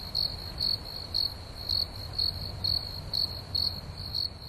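Crickets chirping, most likely the comic 'crickets' sound effect used for an awkward silence: a steady high trill with louder chirps about twice a second.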